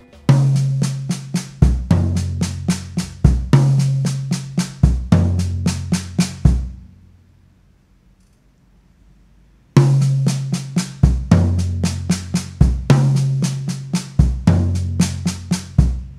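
Drum kit played slowly: sextuplet groups of right, left, right, left, left on the sticks and a bass-drum kick. The first right-hand stroke of each group falls on a tom, alternating between high tom and floor tom, with the rest of the group on the snare. The bar is played twice, with about three seconds of near silence between the runs.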